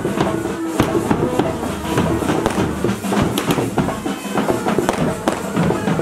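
A marching pipe band playing: bagpipes sounding a steady drone with a melody over it, and bass and snare drums beating under them.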